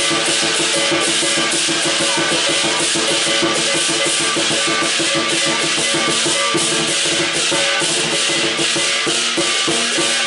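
Lion dance percussion: a large Chinese barrel drum beaten in a fast, steady rhythm, with clashing cymbals shimmering over it throughout.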